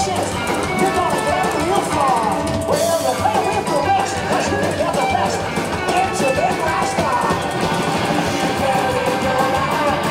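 Live rock and roll band playing at full volume: upright bass, drum kit with a steady beat, and electric guitars with bending lead lines.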